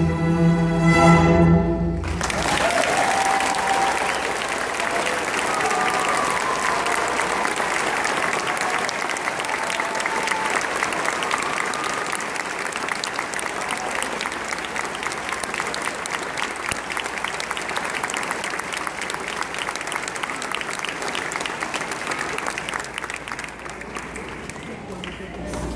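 A school string orchestra (violins, violas, cellos and basses) holds its final chord, which cuts off about two seconds in. A long round of audience applause follows and slowly fades toward the end.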